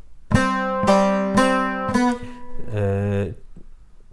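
Bağlama (Turkish long-necked lute) picked with a plectrum: a short run of about four plucked notes in the first two seconds, each ringing on after it is struck.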